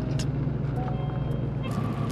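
Truck engine and road noise heard from inside the cab, a steady low hum.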